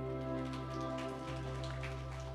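A worship band's last held chord ringing out and slowly fading, with steady sustained tones over a low bass note. Faint scattered ticks sound over it.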